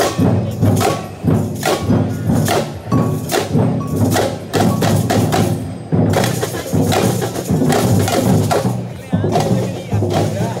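Brazilian street percussion band (bateria) playing a loud, steady batucada rhythm: clanking agogô bells, rattling chocalho shakers, tamborins and bass drums struck together in repeating strokes.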